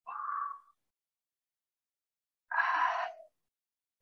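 A woman's two short, breathy exhalations of effort while lifting a dumbbell. The first comes right at the start and the second, louder and rougher, about two and a half seconds in, each under a second long.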